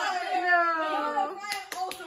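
Young people's voices calling out, followed by a few sharp hand claps starting about one and a half seconds in.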